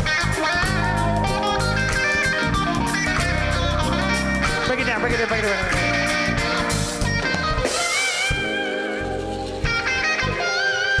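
Live band playing with an electric guitar carrying the lead, over bass and drums. Near the end the held guitar notes waver in vibrato while the low end drops back for a moment.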